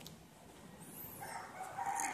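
Faint rooster crowing in the distance, starting about halfway through as one long drawn-out call, with a brief high bird chirp just before it.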